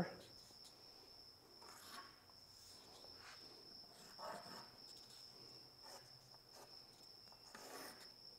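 Near silence with a steady high-pitched insect trill, likely crickets. A few faint, short scratches of a pencil marking along a template on plywood.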